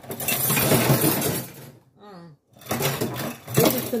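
Dry rice grains poured from a bag into a metal cooking pot, a dense rattling hiss of grains for nearly two seconds, then more after a short pause.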